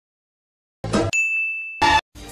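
Silence, then a short noisy burst, then a single bright bell-like ding that rings and fades over about two-thirds of a second. Another loud noisy burst comes near the end.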